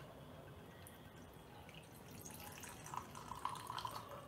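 Whisky being poured from a glass bottle into a tumbler: a faint trickle of liquid that grows louder near the end.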